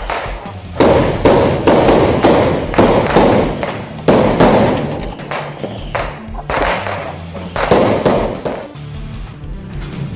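Celebration sound effect of firework bursts over music: several sudden bangs, each fading away, with a lull near the end.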